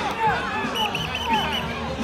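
Children's high-pitched voices calling and shouting over the chatter of a large outdoor crowd.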